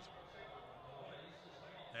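Faint, even stadium ambience: a low wash of background noise with no distinct events.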